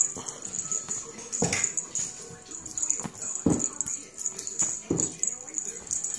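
A pet animal's short calls, three of them about a second and a half to two seconds apart.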